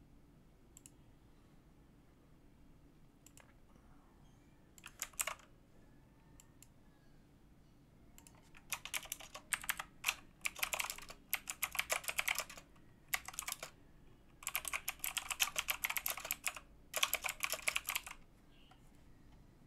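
Typing on a computer keyboard in quick runs of keystrokes: one short burst about five seconds in, then longer runs with brief pauses through the second half.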